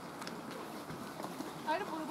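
Distant shouts and calls from rugby players on the pitch as the forwards bind for a scrum, with a few faint knocks among them. The calls grow louder near the end.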